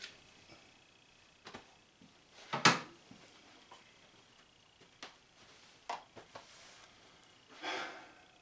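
Quiet small room with a few scattered soft knocks and rustles of people moving and handling things; the loudest is a short sound about two and a half seconds in.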